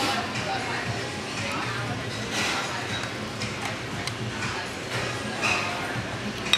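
Busy restaurant ambience: overlapping background chatter with music playing.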